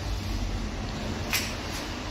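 Steady low background hum with one short noise about a second and a half in.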